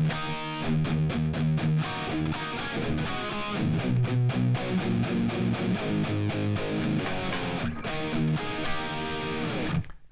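Electric guitar with distortion, tuned down a half step, playing a riff of picked notes and power chords. The low notes step down in a descending line through the middle.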